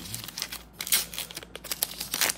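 Foil Pokémon booster pack wrapper being torn open and crinkled by hand, a run of sharp crackling rustles, loudest about a second in and again near the end.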